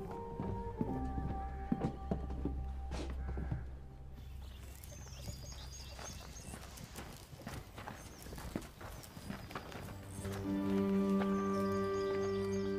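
Horse hooves clip-clopping in an irregular run of knocks, over film-score music that swells about ten seconds in.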